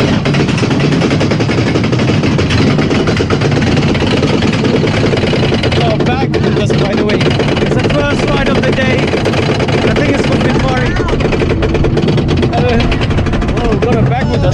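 Pinfari steel roller coaster train rolling out of the station and climbing its lift hill, with a steady, rapid mechanical clatter from the lift and heavy wind rumble on the microphone.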